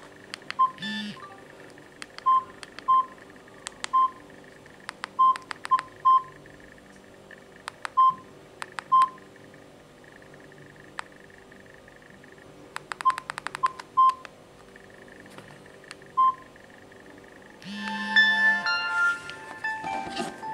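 Keypad tones of a Samsung 1175T feature phone as its menu keys are pressed: a short beep with a click on each press, at irregular intervals. Near the end comes a louder buzz with a run of higher tones.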